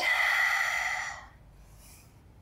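A woman's long, breathy exhale through the mouth with the effort of a push-up. It lasts about a second and fades out.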